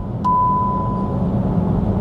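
Cupra Born's lane-assist warning, a steady high beep broken by a click just after the start and ending about a second in: the car asking the driver to take over steering. Underneath, steady tyre and road rumble in the cabin at motorway speed.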